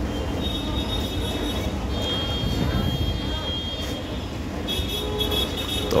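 Metro train running along the platform with a steady low rumble and a thin high wheel squeal that comes and goes three times.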